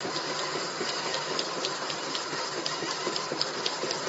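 Paging machine (friction feeder) running, a steady mechanical hum with a faint whine and a quick run of light clicks, about four a second, as food bags are fed one by one onto its conveyor belt.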